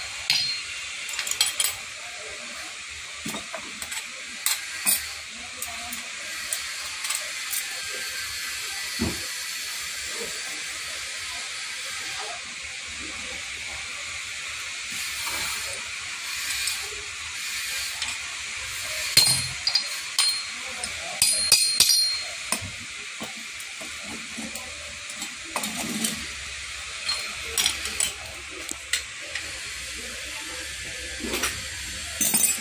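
Sharp metal clinks and taps as a hand hammer works a small steel casting mould and freshly cast lead battery terminal lugs are knocked out and dropped onto a pile, busiest around twenty seconds in, over a steady hiss.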